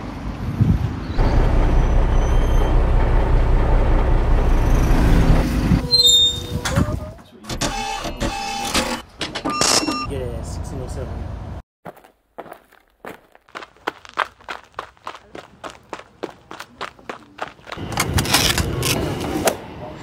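A bus arriving, its engine rumbling low with wind buffeting the microphone for the first several seconds. This is followed by a run of footsteps on pavement.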